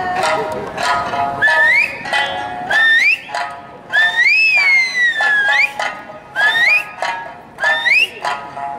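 Eisa drum dance: an Okinawan folk tune with sanshin plays under strikes on the dancers' hand-held taiko drums. Five sharp, rising finger whistles (yubibue) cut through, about every second and a half; the one in the middle is long and rises, then falls.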